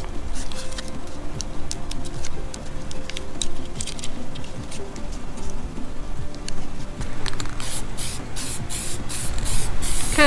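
Blue painter's tape crackling and clicking as it is handled and pressed over the pins of a circuit board. In the last two or three seconds an aerosol can of urethane coating is shaken, giving a regular rattle of about three strokes a second.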